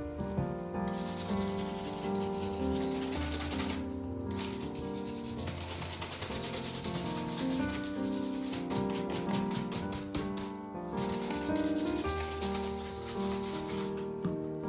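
A shoe brush's bristles scrubbing quickly back and forth over the leather upper of a black Regal cap-toe oxford, in spells broken by two short pauses. Background music plays under the brushing.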